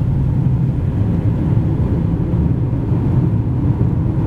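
Steady low rumble of road and engine noise heard from inside a car cruising at highway speed.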